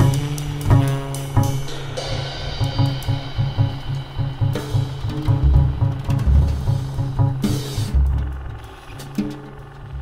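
Jazz from a trio: double bass and drum kit playing a busy, rhythmic groove with a repeated low bass line. It thins out and gets quieter over the last two seconds.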